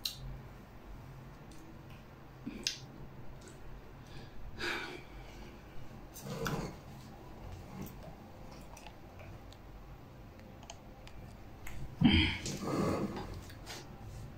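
Small mouth clicks and smacks from chewing and licking fingers after a bite of pickle with cotton candy, scattered through a quiet room. A few brief soft murmurs come with them, and a louder voiced murmur comes near the end.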